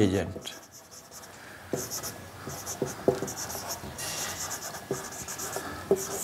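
Whiteboard marker writing on a whiteboard in short scratchy, squeaky strokes, with a few light taps, starting a little under two seconds in.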